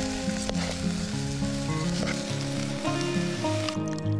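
Pieces of food frying in a pot, sizzling steadily while being stirred; the sizzling cuts off near the end. Background music with plucked notes plays underneath.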